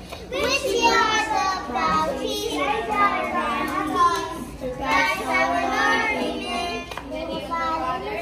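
A group of children singing together, many voices overlapping with some held notes.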